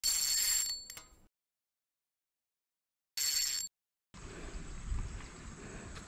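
Two short bell-like sound-effect hits about three seconds apart, each with a ringing high tone; the first fades out over about a second. About four seconds in, a steady low outdoor background noise begins.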